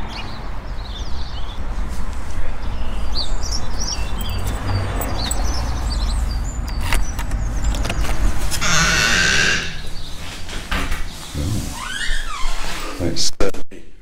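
Low wind rumble on a handheld camera's microphone while walking, then a short hiss-like rattle about nine seconds in. A door is opened and closed with a squeaky, rising creak and sharp latch clicks near the end.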